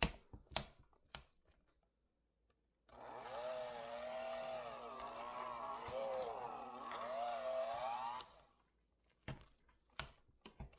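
Electric hand mixer beating boiled potatoes and butter into mash. It starts about three seconds in, runs steadily for about five seconds with its motor pitch wavering up and down as the beaters work through the potatoes, then shuts off. A few light clicks come before it starts.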